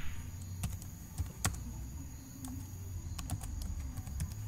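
Typing on a computer keyboard: irregular key clicks, one louder click about a second and a half in.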